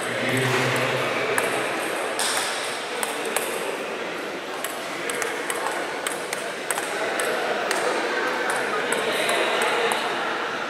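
Table tennis rally: a string of quick, sharp pings and clicks as the ball is struck back and forth by the paddles and bounces on the table, with voices chattering in the background.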